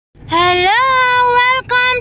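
A high voice singing long held notes, the first sliding up in pitch, with a brief break near the end.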